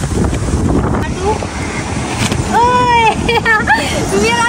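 Wind buffeting the microphone, a dense low rumble throughout. A voice calls out about halfway through, one long held call followed by a few short sounds.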